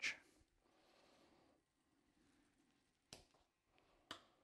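Near silence: room tone, with one brief click about three seconds in.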